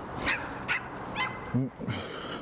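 A dog giving three short, high yips about half a second apart, with a man's brief "mm" near the end.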